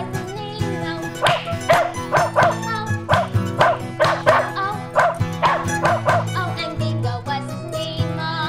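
A small dog barking over cheerful music: about a dozen short barks in quick runs, from about a second in until near the end.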